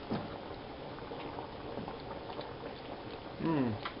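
A pot of pasta water boiling with the penne in it, a steady bubbling hiss. A short spoken sound comes near the end.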